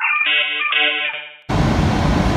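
Short electronic logo jingle of a few bright keyboard chords, ending about a second and a half in. It cuts off suddenly to a loud, steady rushing noise.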